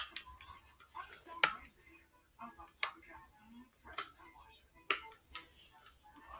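Sharp plastic clicks from a hard plastic phone case being pried and worked at by hand, four or five single clicks spread out over a few seconds, as the case refuses to come off the phone.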